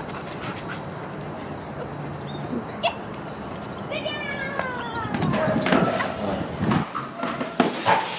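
Animal calls: a short rising chirp near the middle, then a falling call with several overtones about four seconds in, followed by an indistinct person's voice.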